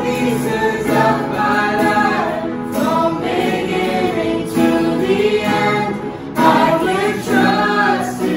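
A man and a woman singing a worship song together, accompanied by a strummed acoustic guitar and an electronic keyboard.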